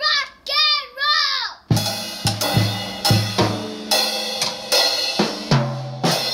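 A child's voice gives three short high calls, then from about two seconds in a Pearl drum kit is played unevenly by a young child: bass drum, snare and cymbal hits at about two to three a second, with the cymbals ringing on between strokes.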